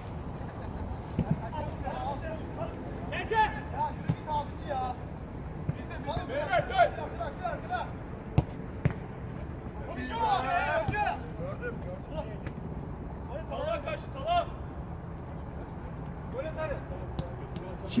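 Players shouting and calling out to each other during play, with a few sharp thuds of a football being kicked.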